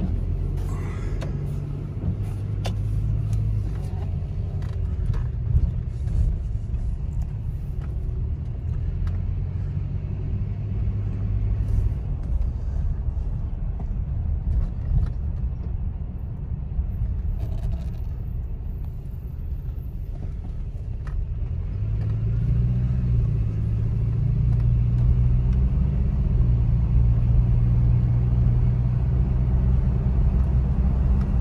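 2004 Toyota Tacoma pickup heard from inside the cab while driving: engine and road noise as a steady low drone. It grows louder about two thirds of the way through as the truck picks up speed.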